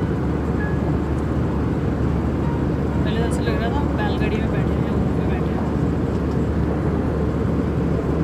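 Steady cabin noise of an Airbus A320 airliner: a constant low rush of engines and airflow with no change in level. Voices show faintly for a second or so in the middle.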